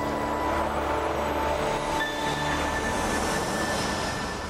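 A TV cooking segment's title jingle: held musical notes under a rushing whoosh sweep that grows in the second half, fading out just after the end.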